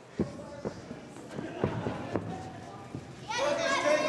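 Several dull thuds from the wrestlers on the ring, with faint voices behind them. About three seconds in, the spectators start shouting loudly, with children's voices among them.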